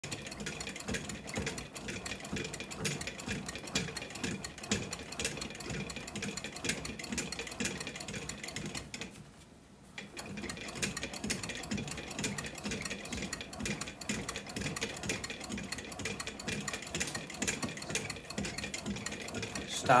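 Hand-operated bat rolling machine pressing a 2021 Easton Maxum Ultra composite BBCOR bat between its rollers. It makes a steady run of small clicks and crackles with an uneven low pulsing, as the composite is rolled to break it in. The sound stops for about a second just before the halfway point, then starts again.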